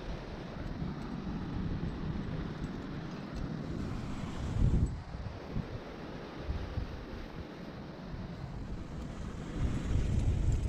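Wind buffeting an action camera's microphone: an uneven low rumble with a stronger gust about halfway through.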